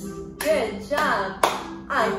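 Woman singing a children's action song, with a few sharp hand claps.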